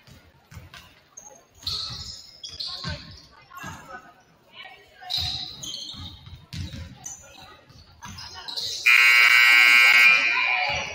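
Basketball dribbled on a hardwood gym floor, with short high sneaker squeaks. About nine seconds in, a loud, steady gym scoreboard buzzer sounds and holds for over a second.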